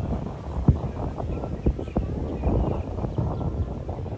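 Wind buffeting the microphone in an uneven low rumble, with a few sharp clicks in the first half.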